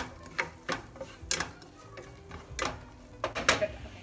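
Wooden spatula stirring diced onions frying in butter in a nonstick frying pan, with several irregular knocks and scrapes of the spatula against the pan.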